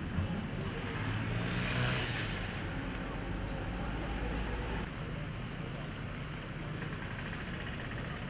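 Heavy machinery's engine running steadily with a low rumble, under a haze of outdoor noise that swells briefly about two seconds in.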